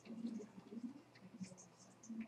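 Faint room sounds: a low murmur of distant voices with light scratching and tapping noises.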